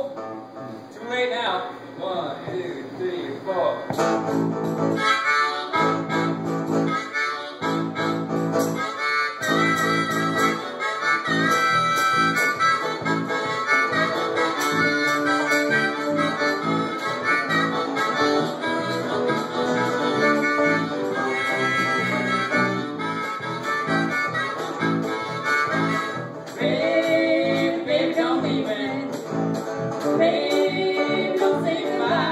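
Live acoustic blues instrumental intro: a harmonica playing sustained, bending lines over a strummed acoustic guitar. The full band comes in about four seconds in.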